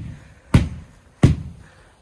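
Sharp, regular thumps about 0.7 s apart as sand infill is knocked out of rolled-back artificial turf; two strikes fall here, each with a short ringing tail.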